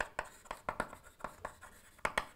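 Chalk writing on a blackboard: a quick, uneven run of about a dozen short taps and scrapes as a word is written.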